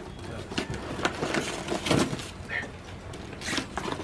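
Paper gift bag rustling and crinkling in a run of irregular crackles, as a cardboard toy box is scraped and pulled out through its torn side.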